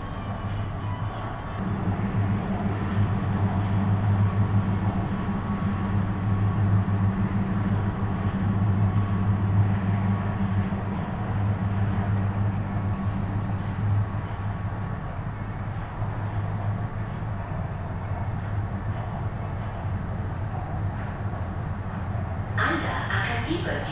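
Interior running noise of a moving Kuala Lumpur MRT train, with a steady low hum that swells about two seconds in and eases off in the second half.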